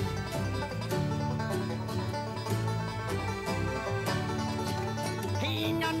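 Bluegrass-style band instrumental with banjo and mandolin picking over steady low bass notes. Singing comes back in at the very end.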